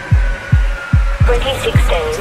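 Dance-music mix driven by a steady deep kick-drum beat, about two and a half thumps a second, under a faint high held tone; a brief wavering vocal or synth fragment comes in about halfway through.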